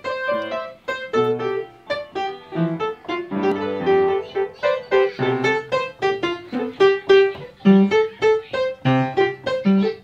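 Upright piano played unevenly by a toddler: single notes and small clusters struck one after another, several a second, with no steady tune or rhythm.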